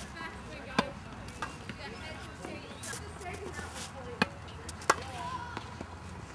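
Tennis ball impacts: a few sharp, separate pops, the loudest just under a second in and two more about four and five seconds in.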